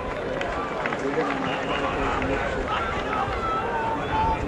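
Indistinct voices of several people talking and calling out at once, over a low rumble, with no clear words.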